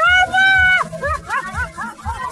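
A loud, high-pitched vocal cry held for almost a second, then a quick string of short rising-and-falling yelps, over music with a steady bass beat.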